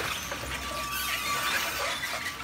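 DS40130 industrial shredder tearing up waste wood: a dense run of irregular cracks and short squeaks as the wood is crushed and splintered, over a thin steady whine.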